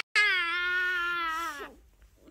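A toddler's long, high-pitched wailing cry, held on one pitch and dropping away at the end.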